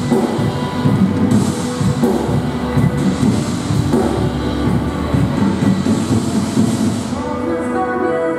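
Live worship band music, an instrumental passage with a full rhythmic backing of drums and bass; about seven seconds in the beat drops away, leaving sustained held chords.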